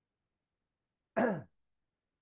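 A man's short throat-clearing sound, about a third of a second long and falling in pitch, a little over a second in; the rest is dead silence.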